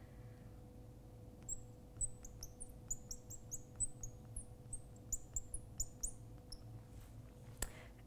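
Fluorescent marker squeaking on a glass lightboard while handwriting: a run of quick, high-pitched squeaks and light taps from about a second and a half in until past six seconds, then a single sharp click near the end. A faint steady hum lies underneath.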